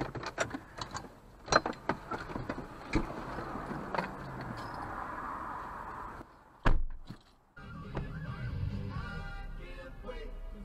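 Sharp clicks and knocks inside a car, then a steady noise and a single loud thump. After a brief drop-out, music with a wavering melody comes in for the last couple of seconds.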